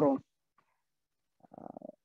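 A woman's lecturing voice trails off, a pause of dead silence follows, and near the end comes a short, low, creaky hesitation sound from her voice just before she speaks again.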